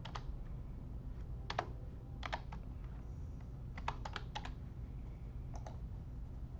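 Typing on a computer keyboard: a handful of key presses in short clusters, as a number is keyed into a spreadsheet, over a steady low hum.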